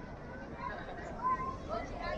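Background voices of people chatting, faint and without clear words, over a steady outdoor hum.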